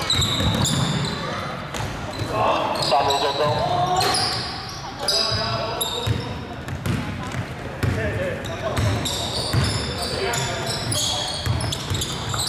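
Basketball bouncing on a hardwood court during play in a large gym hall, with sneakers squeaking and players' voices calling out.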